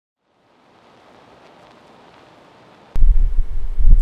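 Microphone noise: a faint hiss, then a click about three seconds in and loud, uneven low rumbling.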